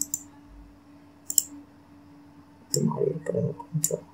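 Computer mouse button clicking about five times, single sharp clicks spaced a second or so apart, coming closer together near the end, over a faint steady hum.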